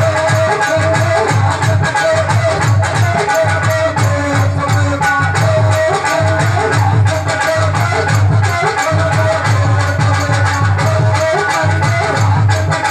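Indian folk music played with no singing: a steady drum beat with a rattling, shaker-like percussion over it and a held melody line.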